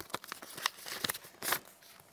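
Paper envelope being opened by hand: crisp tearing and rustling of paper in irregular crackles, thinning out near the end.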